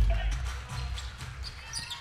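Basketball game sound in a gym: a ball dribbling on the hardwood court over crowd murmur, with a deep thud at the very start that dies away over about a second.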